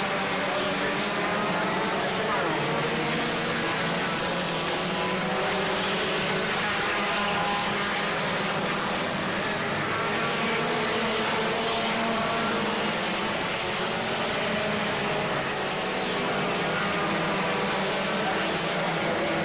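A field of four-cylinder enduro race cars running together, many engines blending into one steady, dense drone.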